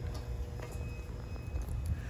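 Faint handling noise with a few light clicks of small plastic toy figurines being moved by hand on a tabletop.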